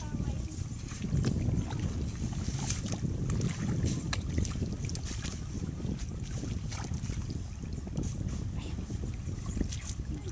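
Wind buffeting the microphone in a steady low rumble, with many small splashes and squelches of water and mud as rice seedlings are pushed by hand into a flooded paddy.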